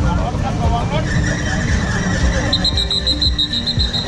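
Voices talking over a low rumble. From about a second in a steady high whine sounds, and in the second half it gives way to a rapid high-pitched beeping, about six beeps a second.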